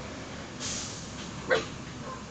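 A single short, high yelp about one and a half seconds in, over faint background noise.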